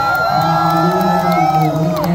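Live rock band playing over a steady low drone while the crowd cheers and whoops, with one long held high note that carries through and breaks off at the end.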